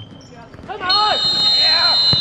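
A referee's whistle blown in one long steady blast of just over a second, starting about a second in, over players' shouts on the futsal court.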